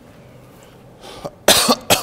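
A man coughs into his hand: a short, softer cough about a second in, then two loud coughs near the end.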